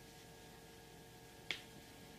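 Faint room tone with a low steady hum, and one short, sharp click about one and a half seconds in.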